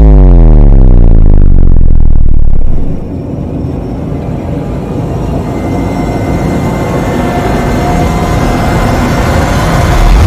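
Cinematic logo-reveal sound effect: a loud, deep hit whose pitch sweeps steeply downward over about three seconds, then a quieter rumbling whoosh that slowly swells toward the end.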